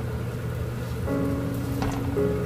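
Hotteok frying in oil in a pan, sizzling steadily, with a short click near the end. Background music with held notes comes in about a second in.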